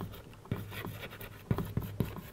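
Chalk writing on a chalkboard: a few sharp taps as the chalk meets the board, with scratchy strokes between them.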